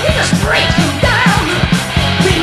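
Early-1980s heavy metal band playing at full volume: a driving drum beat under dense guitars, with a high line wavering in pitch about a second in.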